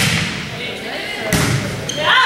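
A volleyball being served: a sharp smack of hand on ball at the start, then a second smack about a second and a half later as the ball is played, in a gym hall. Voices of players and spectators shout around the hits.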